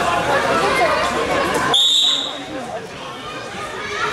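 Spectators' chatter, then a little under two seconds in one short referee's whistle blast, about half a second long, as the background noise drops off suddenly. The whistle signals the wrestlers to start or resume. Quieter chatter follows.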